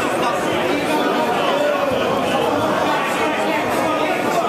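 Crowd of spectators chattering in a large sports hall, many voices talking over one another at a steady level.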